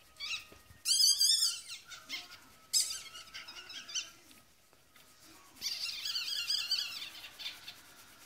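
Newborn Yorkshire terrier puppy squealing in high, wavering chirps, four spells with the loudest about a second in, while it is rubbed briskly in a towel to stimulate its breathing.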